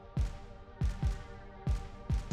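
Background music: deep drum hits that drop in pitch, three of them, over sustained tones.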